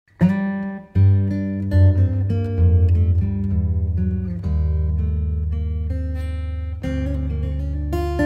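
Background music led by guitar: plucked notes over a sustained low bass, with a brief break just before the first second.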